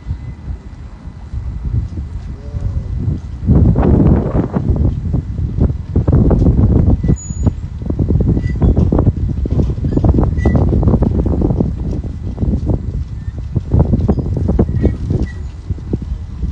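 Wind buffeting a phone's microphone, an uneven low rumble that surges in gusts from about three and a half seconds in.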